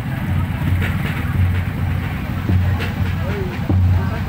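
Several motorcycle engines running at idle in a lined-up group, a steady low rumble that swells now and then, with people's voices over it.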